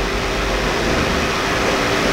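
Steady background hiss with a faint, even low hum running under it, filling a pause in speech.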